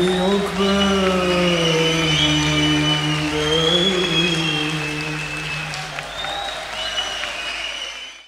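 The closing bars of a Turkish arabesque song: long held notes, with a slow fade near the end.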